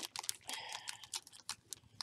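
Crinkling and crackling of a small package's wrapping as it is handled and opened by hand, a rapid run of sharp little crackles.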